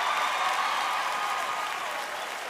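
Large audience applauding, a steady wash of clapping with crowd voices mixed in.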